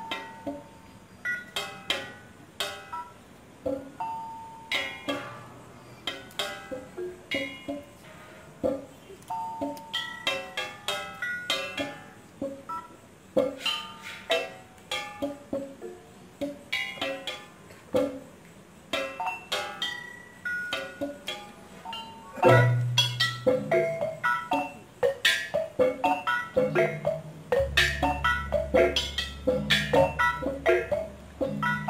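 Balinese gamelan music: a row of small bronze kettle gongs and metallophones struck with mallets in quick, sparse strokes at many pitches, each note ringing. About two-thirds of the way in the playing grows louder, and deep, long-ringing low tones join near the end.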